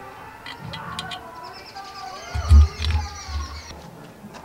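Birds chirping, with a few sharp metallic clicks in the first second as parts of a liquid-fuel camping stove are handled. About two and a half seconds in comes a short run of low thumps, the loudest sound.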